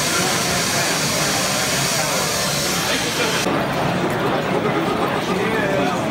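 Indistinct chatter of many people talking at once, with a steady high hiss that cuts off suddenly about three and a half seconds in.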